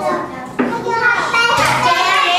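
Young children talking and calling out, several high voices overlapping, growing louder about half a second in.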